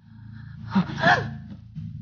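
A person's short startled gasp, a sharp vocal outburst that bends up and down in pitch about a second in, over low steady background music.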